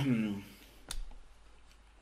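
The tail of a man's spoken phrase, then a single sharp click about a second in, as from a computer mouse button.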